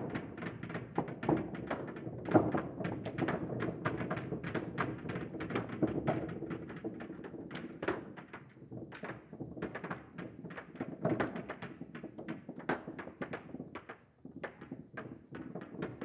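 Steel marbles rolling along the Marble Machine X's wooden marble divider and dropping one after another into its channels: a dense run of small clicks and taps that thins out in the second half.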